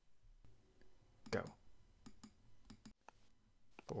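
A quick spoken "go", then faint, irregular clicking and tapping, several clicks a second, from people drawing in a digital art app, heard over a voice call.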